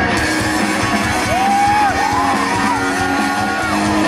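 Live rock band playing loud, with electric guitar and drums and a high melody line held and bent through the middle, heard from the audience.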